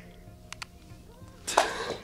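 A short, sharp breath from a man with his hands over his face, about one and a half seconds in.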